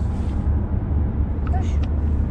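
Steady low road and engine rumble inside the cabin of a moving Volkswagen car, with a couple of brief, faint spoken fragments.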